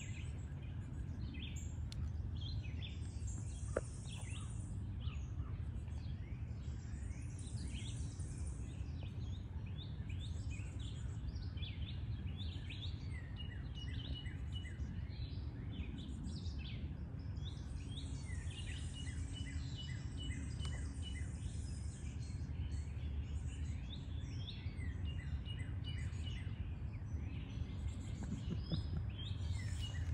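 Outdoor ambience of small songbirds chirping and singing throughout, some phrases made of quickly repeated notes, over a steady low background rumble.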